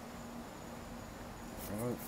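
Quiet background with a faint, thin high tone that comes and goes over a low hum and hiss; a man's voice starts near the end.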